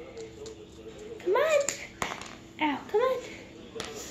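Two short high-pitched vocal calls, each rising then falling in pitch, about a second apart, with a couple of light clicks.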